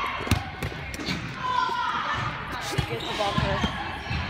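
Volleyballs bouncing and being hit in a gym, a string of irregular sharp thuds, with voices in the background.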